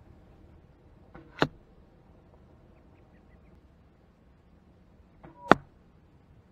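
Two arrows from a homemade longbow striking an archery bag target, one sharp thwack about a second and a half in and a louder one near the end. Each hit comes with a brief softer sound just before it.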